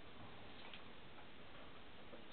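Quiet, steady background hiss with a few faint, short ticks.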